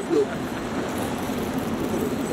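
Steady background noise of road traffic and a murmur of distant voices, with a man's speech trailing off right at the start.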